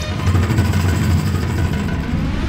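A sitcom sound effect: a loud, steady, engine-like low rumble.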